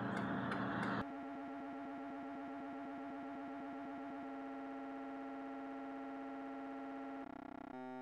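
Background music: a steady synthesizer chord held for several seconds, starting about a second in, shifting slightly midway and dropping away just before the end.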